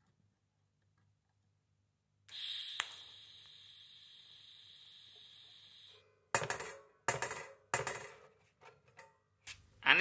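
A few sharp metal clinks and knocks spread over about three seconds in the second half, as a metal-wire funnel is handled and set into a clamp on a workbench. Before them is a stretch of faint steady hiss with one click, and the opening two seconds are silent.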